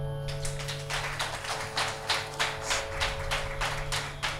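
Small audience applauding, a patter of separate hand claps, over a steady drone held after the song has ended.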